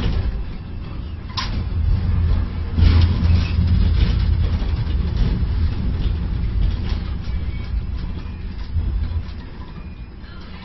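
Steady low rumble of a container gantry crane's machinery, heard from the operator's cab as the spreader is lowered into a ship's cell guides, with a single sharp click about one and a half seconds in.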